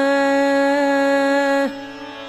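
A female Hindustani classical vocalist holding one long, steady note over a tanpura drone, ending about one and a half seconds in with a short downward slide, leaving the drone.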